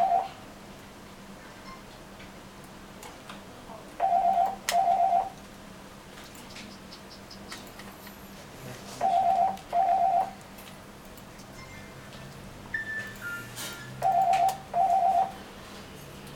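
An electronic beeper sounding a pair of short, same-pitch beeps about every five seconds, loud against the room. Between the pairs come faint ticks of a small screwdriver driving tiny screws into a phone housing.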